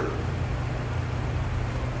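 Steady low hum with an even hiss: background room noise with no distinct event.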